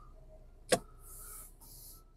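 A single sharp click inside a car cabin about three quarters of a second in, followed by a faint, brief hiss.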